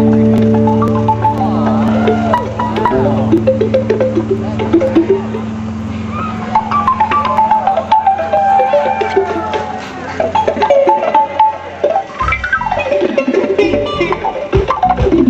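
Live bluegrass jam-band instrumental, with acoustic guitar, fiddle, bass and drums playing together. Held low notes carry the first half, then quick picked and bowed melody lines with some bending pitches take over.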